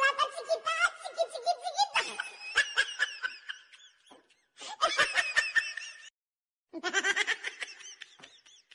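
People laughing, high-pitched giggling in repeated bursts, with a brief dead-silent break about six seconds in.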